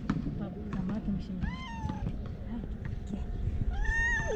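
Tabby-and-white stray cat meowing twice: a short call about a second and a half in that rises and falls in pitch, then a second meow starting near the end.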